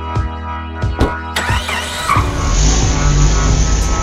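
Background music with a steady beat. About a second and a half in, a car engine sound effect starts up, and from about halfway it runs as a loud low rumble over the music.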